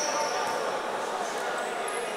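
Indistinct voices echoing in a large sports hall, with the dull thud of foam tatami mats being lifted and set down on the floor.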